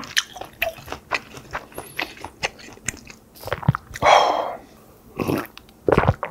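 Close-miked chewing of a mouthful of rice: many small wet clicks and smacks from the mouth, with a louder noisy burst about four seconds in.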